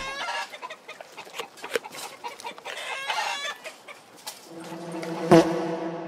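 Chicken calls: a string of short clucks, then one longer, steady held call over the last second and a half, with a sharp knock just before the end.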